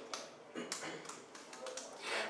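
Computer keyboard keys being typed, a quick, irregular run of faint clicks as a shell command is entered.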